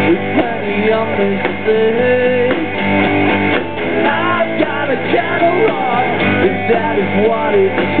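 Indie rock band playing live: electric guitars and a drum kit, with a male lead vocal singing over them.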